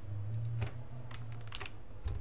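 Computer keyboard keys pressed a few times, a handful of separate sharp clicks, while the password is entered. A steady low electrical hum runs underneath.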